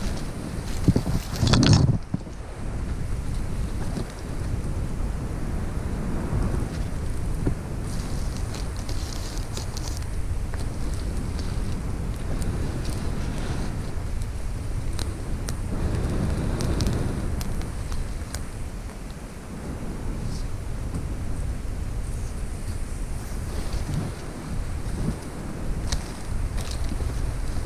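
Wind buffeting the camera microphone as a steady low rumble, with scattered rustles and snaps of someone moving through dry leaf litter in a forest; a louder burst of rustling about two seconds in.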